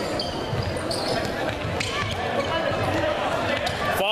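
Futsal ball being kicked and hitting the hard court floor a few times, sharp knocks ringing out in a large echoing sports hall over a steady bed of spectators' chatter and players' shouts.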